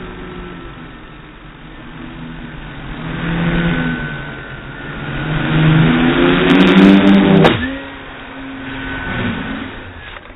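Quadcopter propellers and motors whining, the pitch rising and falling with the throttle and growing loudest around six to seven seconds in. A sharp click comes about seven and a half seconds in, after which the whine is quieter and lower.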